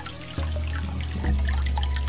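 Aquarium water trickling and dripping at a rippling surface, with small ticks from drops and bubbles, over a low steady hum that grows louder about a second in.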